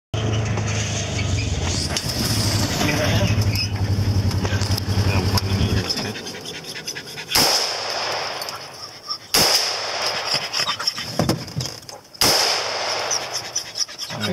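Utility vehicle's engine running steadily, then shutting off about six seconds in. Then three gunshots fired from the open cab, about two and three seconds apart, each sharp with a short echo.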